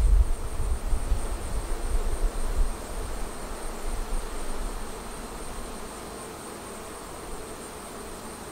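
Honeybees buzzing in a steady hum, a colony crowded outside the hive and feeding on honey spilled during extraction. A low rumble on the microphone in the first half fades out about five seconds in.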